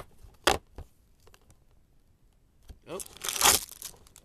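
Cardboard advent-calendar packaging being handled: a sharp click about half a second in, then a loud burst of tearing and rustling near the end.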